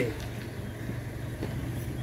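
A steady low hum of a running engine or motor, with no other sound standing out.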